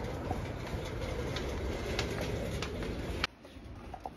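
Footsteps on a shop floor, a few faint steps about half a second apart, over a steady low rumble, all cutting off suddenly about three seconds in to much quieter room sound.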